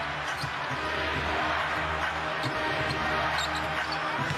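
A basketball being dribbled on a hardwood court, with scattered short bounces over a steady arena crowd murmur.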